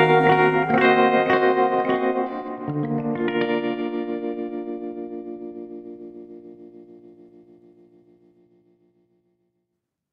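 The closing chords of a pop song on electric guitar with echo and chorus effects: a few chords in the first three seconds, then the last one rings and fades out to silence.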